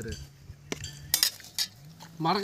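Steel serving spoon clinking against a stainless steel pot as food is served: a few sharp metallic clinks between about two-thirds of a second and a second and a half in.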